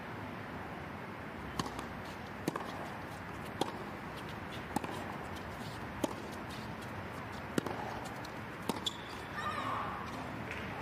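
Tennis ball bounced on a hard court and struck with rackets, sharp single knocks roughly a second apart over steady crowd ambience as a serve is readied and the point is played. Crowd voices rise near the end.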